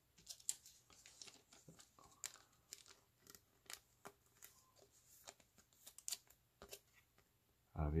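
Trading cards being handled and slid into a soft plastic penny sleeve: a faint, irregular string of small clicks, ticks and plastic crinkles.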